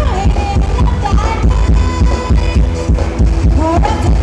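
Loud ramwong dance music from a live band over a PA, with a heavy, steady bass-drum beat and a sliding melody line above it.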